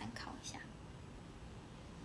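A woman's soft, whispery voice for the first half-second, then faint room tone.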